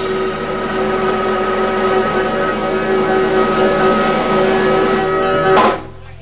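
A live jazz combo holds its final chord, led by a sustained Hammond organ, several notes ringing together. It ends with a last accented hit and a sharp cutoff near the end.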